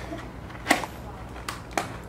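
Clear plastic Elizabethan collar (E-collar) being handled and tied on around a dog's neck: three sharp plastic clicks, the first and loudest under a second in, the other two close together near the end.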